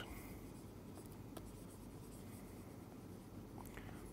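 Faint light scratching and ticks of a stylus writing on a pen tablet, over quiet room tone.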